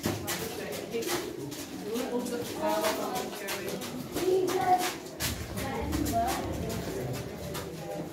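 Irregular clicks and scuffs, with short snatches of indistinct voices echoing in a cave.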